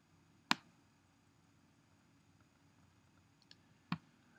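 Two sharp computer mouse button clicks, about half a second in and again just before the end, with a faint tick between, over near-silent room tone: the button pressed and then released as a drag is made across the screen.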